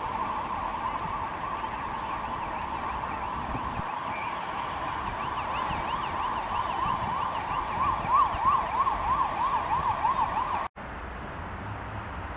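Emergency vehicle siren in a fast rising-and-falling yelp, about three sweeps a second, over steady city traffic noise. It grows louder past the middle and cuts off suddenly near the end.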